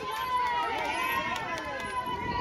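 Several people's voices talking over one another as a group walks, with a steady high whine running underneath, falling very slightly in pitch.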